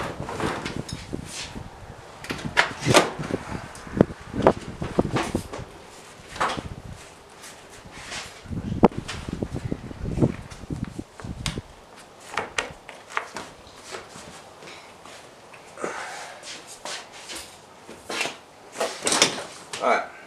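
Irregular knocks, clunks and scraping as a Nissan 240SX's rear seatback is worked loose and lifted out, with a denser stretch of rumbling handling about halfway through.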